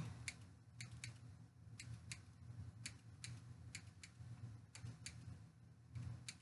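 Scissors snipping stray frizzy ends off curly crochet hair extensions: about a dozen faint, irregular snips over a steady low hum.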